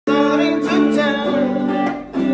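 A man singing over guitar chords in an informal jam.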